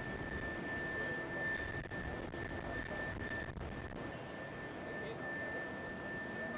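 Jet aircraft running on the apron close by: a steady high whine over a continuous rushing noise.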